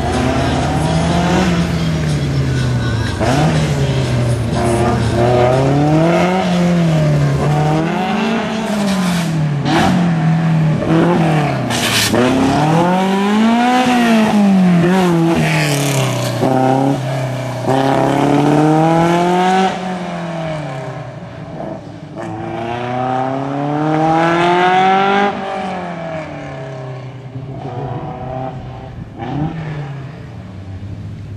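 Open-cockpit sports racing car's engine revving hard and lifting over and over as it is driven through tight slalom cones. Its pitch climbs and drops every second or two, and it grows somewhat quieter in the last third.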